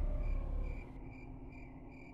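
Cricket chirps repeating evenly, about two or three times a second, with a low rumble fading out in the first second.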